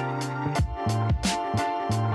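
Background music with a bass line and a steady beat.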